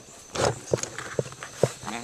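A few footsteps, about half a second apart, after a brief rustle near the start, as someone walks while packing up.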